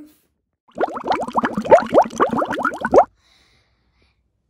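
Sea otter calling in a rapid run of short rising squeaks for about two seconds, cut off abruptly.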